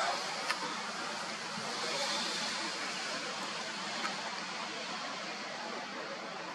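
Steady outdoor background hiss with no distinct source standing out, and a faint click about half a second in.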